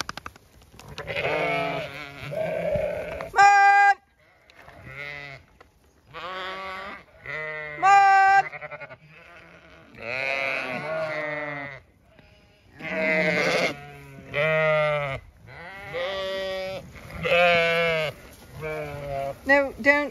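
A flock of Zwartbles ewes bleating, one call after another and sometimes overlapping, each call about a second long and pitched differently from the last.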